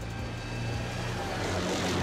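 Armoured tracked vehicle driving past: a steady rushing engine noise with a low hum, growing a little louder toward the end as it comes close.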